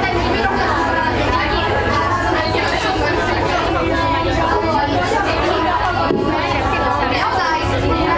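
Several people chattering at once in a crowded bar, overlapping voices at a steady loud level, with a continuous low rumble underneath.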